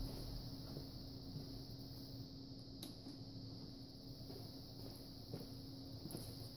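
Faint room tone: a steady low hum with a single faint click about three seconds in.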